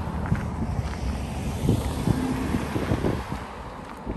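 SUVs driving past on a paved road and moving away, a low engine and tyre rumble that fades toward the end, with wind buffeting the microphone.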